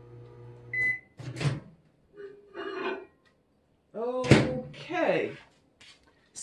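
Microwave oven running with a steady hum while it melts glycerin soap base, cutting off about a second in with a single high beep as its 30-second heating cycle ends, followed by a click as the door is opened.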